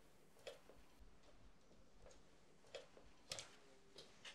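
Near silence: quiet room tone with a few faint, irregular clicks, two of them close together about three quarters of the way in.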